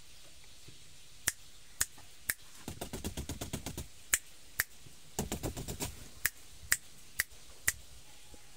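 A series of sharp clicks, mostly single and about half a second apart, with two quick rattling runs of clicks in between.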